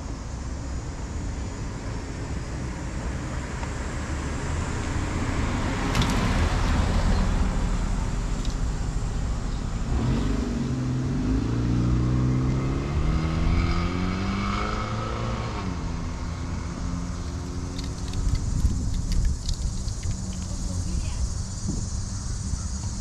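Road traffic: a steady low rumble, with a car's engine speeding up and rising in pitch from about halfway through, then easing off.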